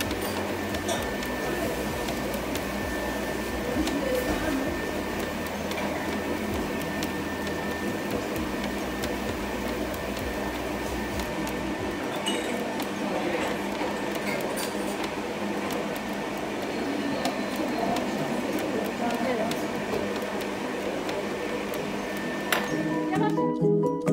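Electric stand mixer motor running steadily as its hook kneads a stiff bulgur çiğ köfte dough, with background music. Near the end the mixer sound gives way to the music alone.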